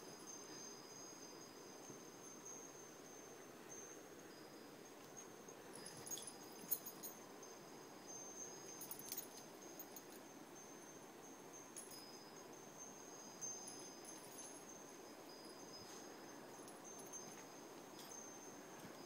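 Faint, steady high-pitched trill of night insects such as crickets, with a few light jingles of pet collar tags as the animals move.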